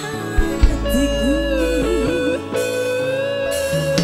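Live dangdut band music: an electric guitar plays a bending, wavering melody line over bass and drums between sung lines.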